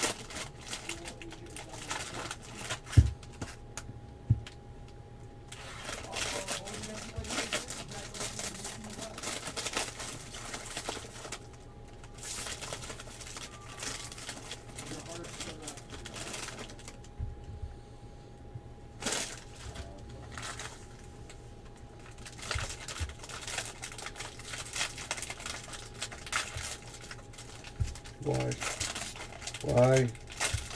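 Foil trading-card pack wrappers crinkling and rustling as packs are handled and torn open, with cards being handled; a sharp knock on the table about three seconds in.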